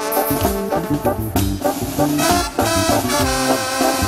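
Live Mexican banda music: an instrumental break between sung verses, with trombones and clarinets carrying the melody over a bass line of short low notes on a steady beat.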